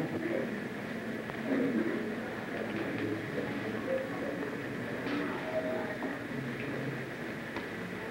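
Steady hiss and hum of an old film soundtrack, with faint low voices now and then.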